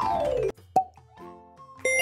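Cartoon-style logo transition sound effect: a falling pitched sweep that cuts off about half a second in, then a single sharp pop. Bright chime tones come in near the end over soft background music.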